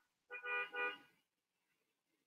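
A faint double toot: two short notes of the same steady pitch, back to back, about half a second in.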